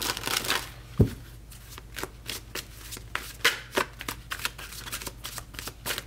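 A deck of tarot cards being shuffled by hand: a quick flurry of cards at the start, a dull knock about a second in, then a run of short, irregular card flicks and slaps.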